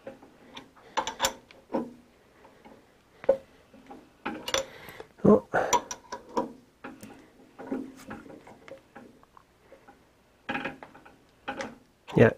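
Irregular light clicks and metallic knocks from a mill spindle being turned by hand, with the belt slack, to start a tap into a hole while the quill is fed down by a quill wheel.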